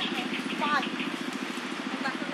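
A small engine idling steadily with a rapid low pulse. A few short, high, gliding calls sound over it a little under a second in.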